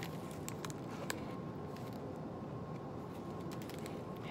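Paper journal pages being handled and turned, a few light clicks and rustles, over a steady low roar from a home furnace running in the background.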